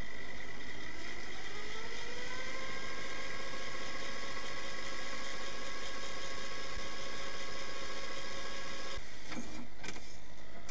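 A small motor spins up with a rising whine and then runs steadily under a hiss. It cuts off abruptly about nine seconds in, followed by a few sharp mechanical clicks.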